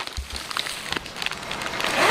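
A clear plastic zippered bag packed with suit sets being handled: a low thump near the start, then crinkling and rustling of the plastic.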